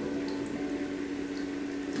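A steady low hum over faint room noise, with two tiny faint ticks.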